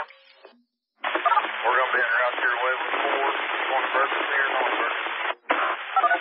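Emergency-services two-way radio traffic: voices speaking over the radio with its thin, narrow sound. One transmission tails off at the start, and after a short gap another voice talks from about a second in, breaking off briefly near the end before the next transmission.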